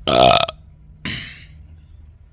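A man's loud, low burp lasting about half a second, followed about a second in by a softer breathy exhale.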